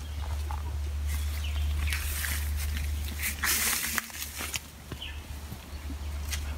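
Rustling and scraping of a person clambering on a papaya tree trunk, with two louder rustles in the middle, over a steady low rumble.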